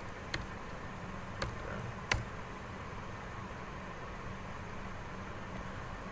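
Three sharp computer keyboard keystrokes spread over the first two seconds, the last the loudest, over a steady low room hiss.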